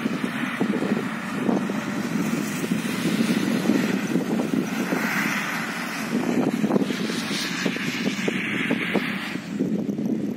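Dacia rally car's engine running hard as the car drives along a dirt track, loudest as it passes close by near the middle.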